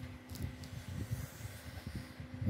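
Quiet room tone between spoken lines: a faint steady hum with uneven low rumble and a few soft ticks about a third of a second in.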